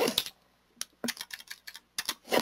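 Computer keyboard keystrokes: a few separate key presses in the second half, as a mistyped word is deleted with the backspace key.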